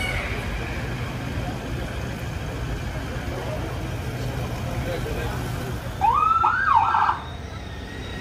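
Steady low rumble of motorcade vehicles. About six seconds in, a police escort siren gives a short burst, one rising whoop followed by a fast warble, cut off after about a second.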